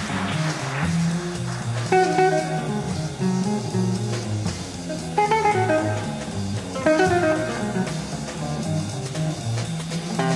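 Live jazz played by a small group: guitar over a walking bass line, with chords struck about 2, 5 and 7 seconds in.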